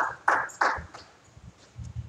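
Three short knocks about a third of a second apart in the first second, followed by a faint low rumble.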